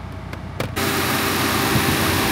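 Subaru Crosstrek's flat-four engine idling warm with the AC on full, a low hum at first, then, after a click about a second in, a loud, steady rushing noise from the open engine bay.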